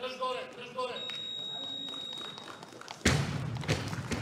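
Barbell loaded with rubber bumper plates (80 kg) dropped from overhead onto the wooden lifting platform about three seconds in: one loud thud with a short echo, followed by a few smaller knocks as the bar bounces and settles.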